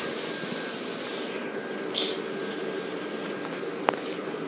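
Steady drone of the electric blower fans that keep inflatable Christmas decorations up, with a faint hum in it. A short hiss comes about two seconds in, and a single click near the end.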